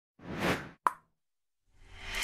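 Intro animation sound effects: a short whoosh that swells and fades, then a single sharp pop about a second in. A fuller, steady sound begins fading in near the end.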